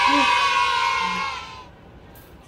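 A drawn-out, high-pitched cheer of 'yaaay' in a single voice, held on one pitch and fading out about one and a half seconds in.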